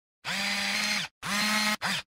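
Small electric motor whirring in three bursts, a long one, a shorter one and a brief third, each spinning up and winding down at its ends. This is a motorised camera-lens zoom sound effect.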